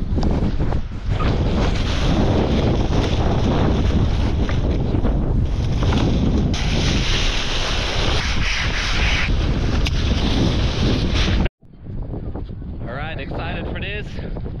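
Strong wind buffeting the microphone of a body-worn action camera: a loud, steady rush. It cuts off suddenly about three-quarters of the way through and comes back as fainter wind.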